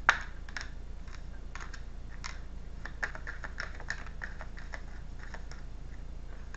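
Tarot cards being shuffled and handled: irregular light clicks and snaps of card against card, the sharpest just after the start. A faint steady low hum sits underneath.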